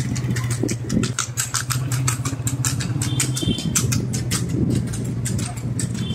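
A motorcycle engine running at a steady pitch, with rapid, irregular clattering knocks over it throughout.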